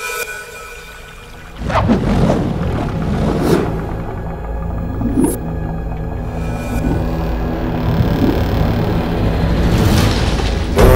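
Dramatic film background score: about a second and a half in, a deep rumble sets in with swooping tones over it, slowly growing louder.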